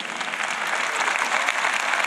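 Large arena audience applauding: a dense, steady clatter of many hands clapping that builds over the first second and then holds.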